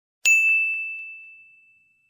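A single bright bell-like ding sound effect, struck once about a quarter second in and ringing out as it fades over about a second, with a couple of faint clicks just after the strike.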